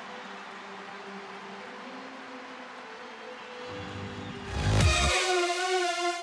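A steady, moderate background of stadium crowd noise, then, about four and a half seconds in, a rising low rush followed by a loud held musical tone: a whoosh-and-sting transition effect between highlight clips.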